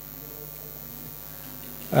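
Steady electrical mains hum with faint hiss; a man's voice starts right at the end.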